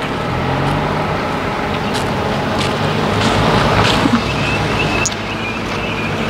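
Road traffic going past close by, a steady noise that swells gently to its loudest around the middle as a vehicle passes.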